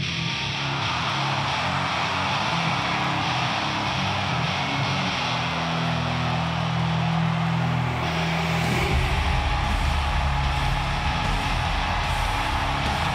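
Hard-rock entrance music with electric guitar, cutting in suddenly and turning heavier with a deep bass line about nine seconds in.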